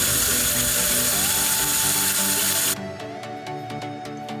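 Shower running, a steady hiss of water spray that cuts off suddenly about two and a half seconds in, with background music underneath.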